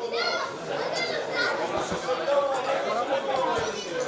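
Several spectators' voices chattering and calling out at once, overlapping with one another.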